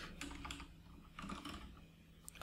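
Typing on a computer keyboard: faint, irregular key clicks as code is entered.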